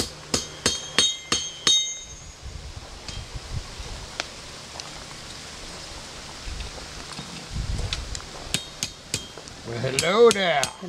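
Steel tools clinking at a blacksmith's forge: five quick metallic strikes that ring in the first two seconds, then quieter handling and a few more clinks near the end.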